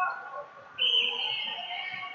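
A shrill whistle blast, one steady high note lasting about a second, starting just under a second in, over scattered voices of spectators and coaches.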